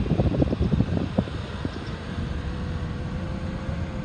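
A 2001 Toyota Avalon's 3.0-litre V6 idling, heard from inside the cabin with the air-conditioning blower running; the seller says the engine has a slight misfire. A faint steady whine joins about halfway through.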